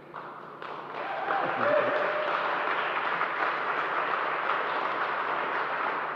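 A small crowd applauding, building up about a second in, holding steady, and thinning out near the end.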